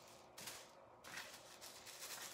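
Faint rustling of tissue paper being lifted from a stack, a couple of soft crinkles against near silence.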